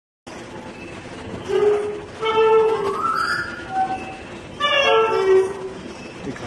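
Clarinet playing two short phrases of held and sliding notes, over a steady hiss of background noise.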